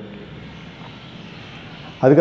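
Steady background noise, an even rush with no distinct events.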